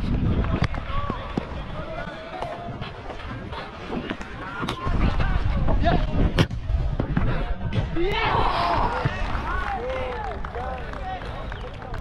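Sounds of an amateur football match on a head-mounted action camera: a few sharp thuds of the ball being kicked, players' shouts and calls that are busiest about eight seconds in, and a constant low rumble of the wearer's running and wind on the microphone.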